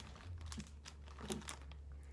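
Plastic bag crinkling in a few short, scattered rustles as it is picked up and handled, over a steady low hum.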